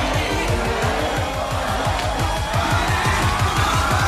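Electronic dance music in a build-up: a rising sweep climbs steadily in pitch over a pounding bass-drum pulse that speeds up toward the end.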